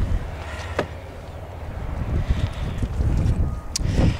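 Low rumble of wind buffeting the microphone outdoors, with a couple of brief clicks, one about a second in and one near the end.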